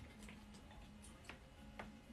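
Near silence, with a few faint, short clicks scattered through it.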